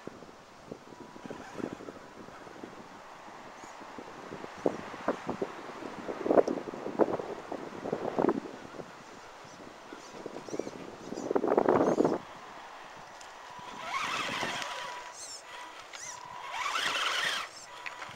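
Axial SCX10 Deadbolt RC crawler working over dry pine needles, dirt and small stones: irregular crackling and crunching from the tyres, louder in a few bursts in the middle. Near the end come two short bursts of electric motor and drivetrain whine as it climbs close.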